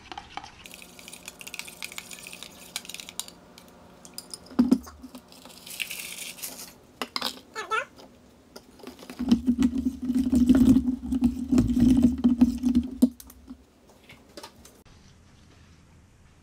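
Metal spoon scraping and clinking against a stainless steel bowl as oats are stirred, in scattered clicks and scrapes. About nine seconds in, a loud steady low hum comes in and lasts about four seconds.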